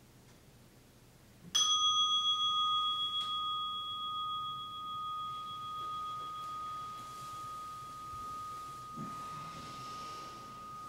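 A single meditation bell strike about a second and a half in, ringing with a clear pitch and slowly fading over the next several seconds, marking the end of the sitting. A faint rustle of robes near the end.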